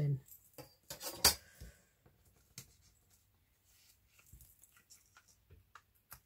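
A few separate small clicks and clacks of craft tools being handled and set down on a wooden tabletop, including a steel ruler being moved aside. The loudest clack comes a little over a second in, with only faint handling noises after it.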